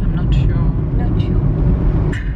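Steady low rumble of a car's road and engine noise heard from inside the cabin while driving.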